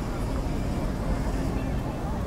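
Busy city street ambience: indistinct crowd chatter over a steady low traffic rumble.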